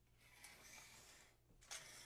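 Faint rustling and scraping of a grapevine wreath, dressed with artificial flowers and a ribbon bow, being turned round on a table, with a sharper brief rustle near the end.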